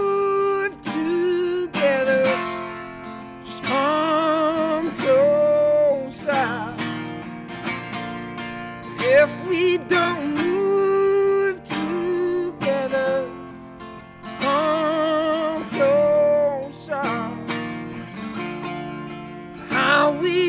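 A male voice singing drawn-out notes with vibrato over a strummed acoustic guitar.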